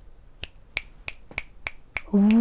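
A hand snapping its fingers six times, evenly at about three snaps a second, as finger-snap applause for a spoken word poem.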